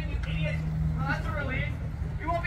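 Indistinct people's voices over a steady low hum.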